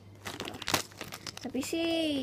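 Clear plastic packaging bag crinkling in irregular crackles as a squishy is handled inside it.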